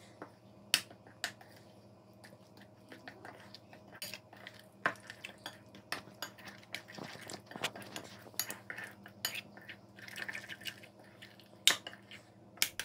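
A metal spoon stirring a thick, wet spice paste in a ceramic bowl, with irregular clinks and scrapes against the bowl.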